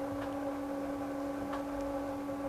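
A steady faint hum with light hiss, the background tone of the recording in a pause between a man's phrases.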